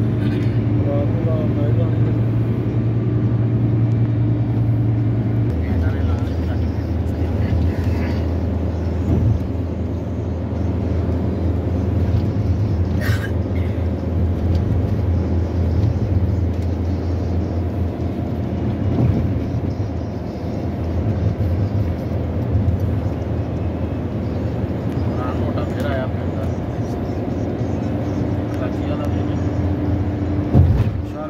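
Steady low rumble of a car driving at speed on a highway, heard from inside the cabin: engine and road noise.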